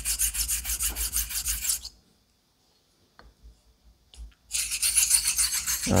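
Straight razor with a taped spine stroked back and forth on an Atoma 600 diamond plate to set the bevel: a fast, even rasping, about five or six strokes a second, with a slight banging that a protruding part of the blade's shape makes on the plate. The strokes stop about two seconds in and start again after about two and a half seconds of near silence.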